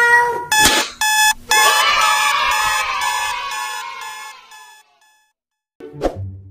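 A drawn-out shouted call ends just after the start. A sharp click follows, then a ringing, alarm-like sound effect that pulses and fades away over about four seconds. A short low burst of sound comes near the end.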